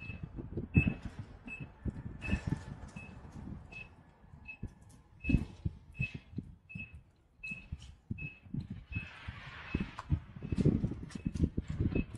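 Walking along a city sidewalk: irregular low thumps of footsteps and camera handling, with a short, high electronic beep repeating steadily about every three-quarters of a second.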